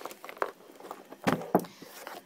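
Handling noise of a craft box being latched shut and turned over: a few light clicks from the clasp, then a louder knock-and-rustle about one and a half seconds in.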